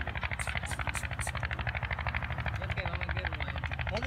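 An engine running steadily with a fast, even pulse, under the chatter of people's voices.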